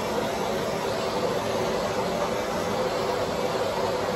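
A hand-held torch's flame burning with a steady rushing noise as it heats window film on a car's back glass.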